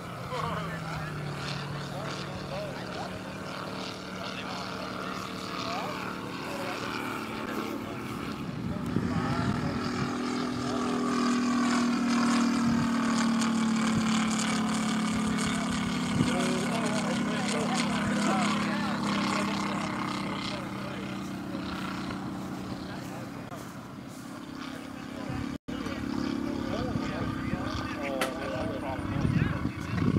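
Radial engine of a Grumman F6F Hellcat in flight, running steadily as it flies by. It grows louder to a peak about halfway through, then fades away. Near the end there is a very short gap in the sound.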